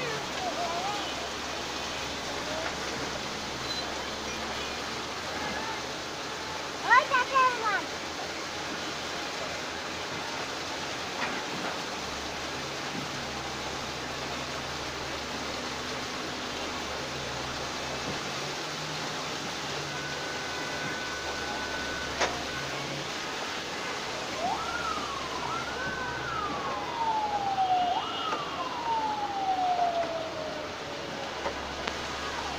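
Steady outdoor din of road traffic and a working excavator. A short loud burst of quick pitched sounds about seven seconds in, a held horn-like note about two-thirds through, then near the end a siren-like wail that rises and falls several times.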